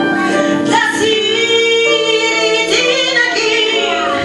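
A woman singing into a microphone in long held notes with vibrato, accompanied by a keyboard.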